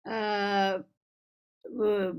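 A woman's voice holding one vowel at a level pitch for just under a second, a drawn-out hesitation sound in mid-sentence. Ordinary speech resumes near the end.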